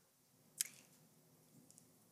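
Near silence in a pause between speakers, broken by one short faint click a little over half a second in and a couple of tinier ticks near the end.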